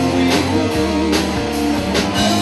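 Live rock band playing an instrumental passage: guitar chords over a drum kit, with a snare stroke on the backbeat a little less than once a second.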